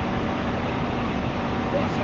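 Steady hum and hiss of an air-conditioning unit running, with a faint low tone held throughout.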